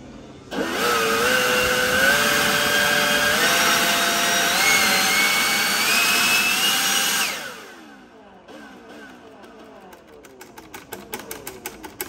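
DeWalt 60V FlexVolt brushless cordless leaf blower spinning up as its trigger is squeezed. The motor whine rises in distinct steps rather than smoothly, showing the speed control is not fully variable. It is released about seven seconds in and winds down, followed by a rapid ticking that quickens near the end.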